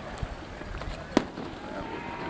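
Fireworks going off: one sharp, loud bang a little over a second in, with a smaller, duller thump just before it near the start.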